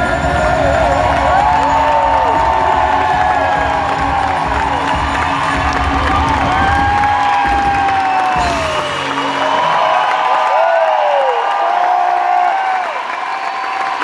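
A live acoustic-rock band (acoustic guitar, electric guitar and cajon) plays its closing chords, which stop about nine seconds in. A concert crowd cheers and whoops throughout and keeps cheering after the music ends.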